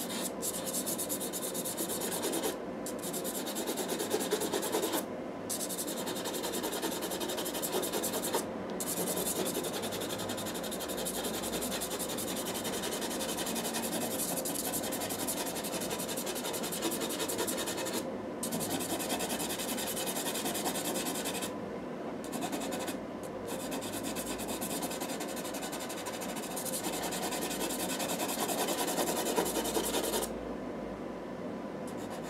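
Stabilo CarbOthello chalk-pastel pencil scratching across pastel paper in quick, continuous hatching strokes. It breaks off for a moment a few times when the pencil lifts.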